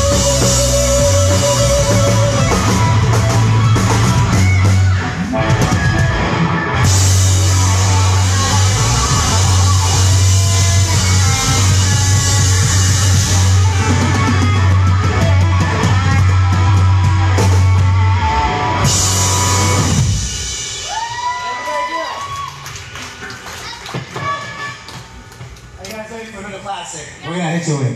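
Live rock band playing loudly: electric guitars and drum kit. The song stops about 20 seconds in, leaving a quieter stretch with a few sliding notes.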